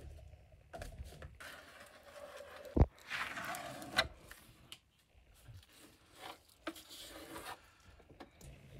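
Hand sanding on fiberglass: short, irregular scraping strokes of sandpaper along a panel edge, with one sharp knock about three seconds in.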